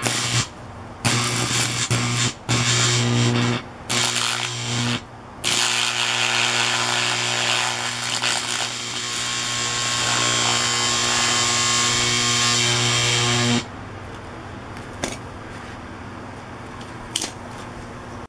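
Electric arc of a homemade arc furnace buzzing and crackling with a strong mains hum as it melts cobalt powder into a bead. It is struck in four short bursts over the first five seconds, then held steadily for about eight seconds before cutting off, leaving a faint hum.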